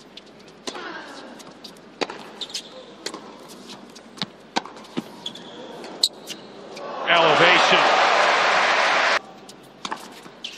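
Tennis rally: sharp racket hits and ball bounces about once a second. About seven seconds in, a loud crowd cheer with applause bursts out and cuts off abruptly about two seconds later.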